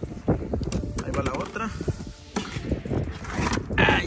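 A live tilapia being handled: rustling in dry grass and scattered knocks and clicks as the fish is picked up and pushed into a plastic bucket, with a brief sudden flurry near the end. A voice is heard briefly.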